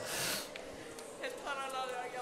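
A short breath into a handheld microphone, then a faint voice in the room during the second half.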